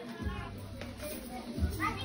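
Indistinct chatter of several people, children's voices among them, with music in the background; near the end one voice rises sharply in pitch.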